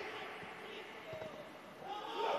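Faint pitch-side sound in an empty football stadium with no crowd: a few dull thuds of the ball being kicked, with faint distant players' voices.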